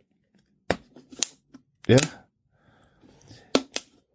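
Thin plastic water bottle crinkling with a few sharp crackles about a second in and again near the end.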